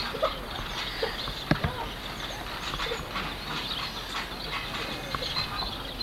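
Backyard trampoline being jumped on: repeated bounces with creaks and knocks from the springs and frame, the sharpest knock about a second and a half in.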